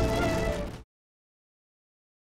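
Background score with sustained tones and a gliding melodic note, fading quickly and cutting off under a second in, followed by dead silence.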